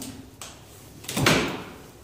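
A lever-handle closet door being opened: a faint click about half a second in, then a brief louder rush of noise just after a second in as the door swings open.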